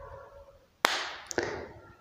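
A sharp click or knock with a short ringing tail, then a fainter second click about half a second later.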